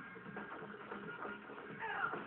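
Fight-scene soundtrack of a martial-arts film played through a TV speaker: background music with a shrill, falling cry near the end.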